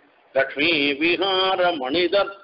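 A man's voice chanting a Sanskrit verse in a slow, melodic recitation, holding long notes and gliding between them; it begins after a brief silence about a third of a second in.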